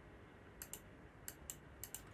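A handful of faint, sharp clicks from operating a computer, starting about half a second in, against near silence.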